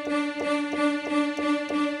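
Yamaha PSR-E443 keyboard sounding one held note on a layered strings-and-choir voice, steady, with a light regular pulse about three times a second.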